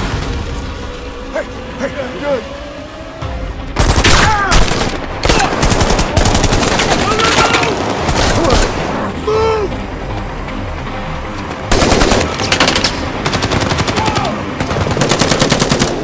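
Automatic gunfire in long bursts of rapid shots, first from about four seconds in to about nine, then again from about twelve seconds in to the end.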